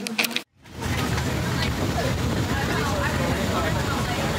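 Steady rumble and road noise inside a vehicle travelling at highway speed, starting suddenly after a cut about half a second in. Faint voices sit under the noise.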